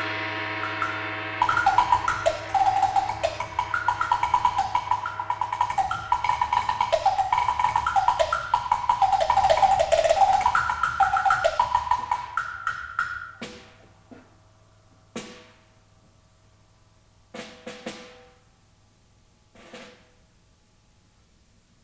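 Solo percussion performance: a ringing note dies away, then fast rolls and strokes move quickly between several pitched drums or blocks. About two-thirds of the way through the playing thins out to a few separate single strikes.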